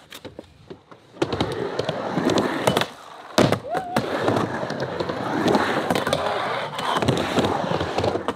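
Skateboard dropping into a concrete bowl about a second in, then its wheels rolling steadily across the concrete, with a couple of sharp clacks of the board.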